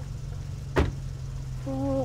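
A car's passenger door slams shut once, a sharp single thud about a second in, over the steady low hum of the car with its engine running.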